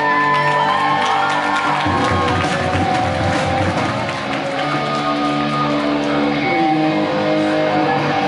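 Live rock band playing: electric guitars with a lead line that bends and slides between notes in the first second or two, over a drum kit with steady cymbal and drum hits.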